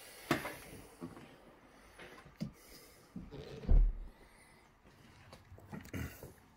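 A few light knocks and handling sounds, then a single dull low thump a little past halfway: the boot lid coming down onto a towel laid over the latch, so it cannot catch and lock.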